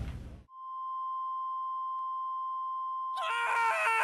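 A steady electronic test tone near 1 kHz, like a broadcast sign-off tone, holding for about two and a half seconds. It is followed by a short, high, wavering vocal cry that drops in pitch at the end.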